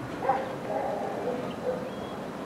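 Several short animal calls in quick succession, over a steady background hiss.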